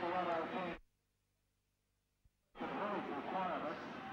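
A man's commentary voice that cuts off suddenly about a second in. The sound then drops out to dead silence for about a second and a half, with one faint tick, before the voice resumes.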